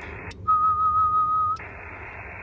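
Icom IC-7300 transceiver keying up to transmit for about a second while its SWR is checked, giving a steady high tone from its speaker. A click marks the switch into and out of transmit, and the band hiss drops out while the tone sounds.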